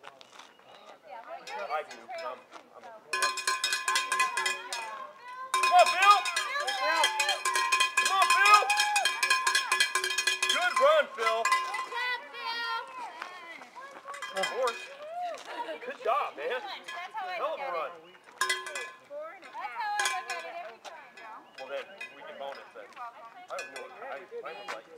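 A cowbell rung rapidly in two long spells in the first half, then in short bursts later on. Voices call out and cheer over it.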